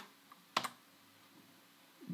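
One keystroke on a computer keyboard about half a second in, with a fainter tap just before it. Otherwise quiet room tone.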